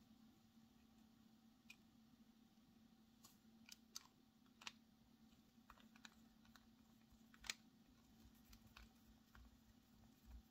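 Faint, scattered clicks and taps of small plastic fountain-pen parts being handled and turned while a TWSBI Eco's piston mechanism is put back together, the sharpest click about seven and a half seconds in.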